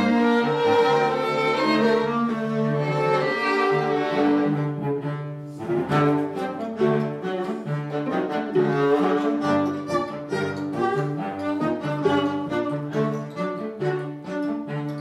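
A string quartet with double bass playing a tango live. Long held bowed phrases give way, about six seconds in, to short, accented notes over a steady bass beat.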